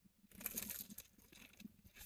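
Faint, irregular crunching of a crisp fried spring roll being bitten into and chewed.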